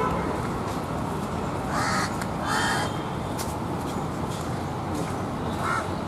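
Crows cawing, with two harsh calls close together about two seconds in, over a steady background hum of the street.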